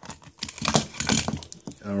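A hollow plastic surprise egg being handled and pried open: a quick run of small plastic clicks and rattles.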